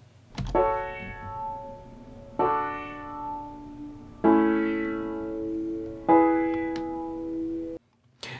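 Piano playing four sustained chords about two seconds apart through Studio One's Autofilter in its default setting: a basic filter sweep driven by a triangle LFO over one bar, so the tone sweeps up and then down. Playback stops abruptly near the end.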